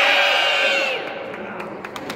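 A crowd of children and adults yelling 'Team!' together as loud as they can, one long drawn-out group shout that ends about a second in and gives way to crowd chatter and laughter.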